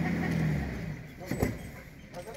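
A vehicle engine's low hum swells and fades over about a second, with a person laughing over it, then a single sharp knock about a second and a half in.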